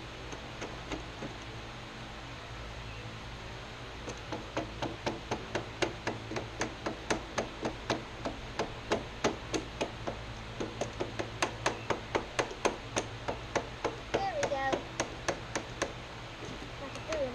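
A ratchet wrench clicking as it tightens a nut holding a grass chute guard onto a riding mower's deck. After about four seconds, short sharp metal clicks start and run on evenly at two to three a second.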